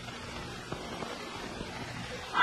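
Steady hiss and low hum of an old film soundtrack between lines of dialogue, with a couple of faint clicks.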